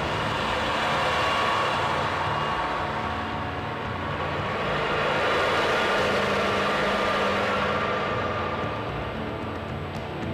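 A rushing, rumbling sound effect for supernatural power, as mist swirls around a meditating figure, mixed with background music. It swells about a second in, eases, and swells again around the middle.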